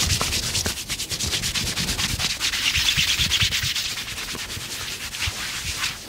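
Massage: a hand rubbing briskly up and down a woman's back through her fabric top. It makes a fast, rhythmic rasping friction sound, many strokes a second, that stops just before the end.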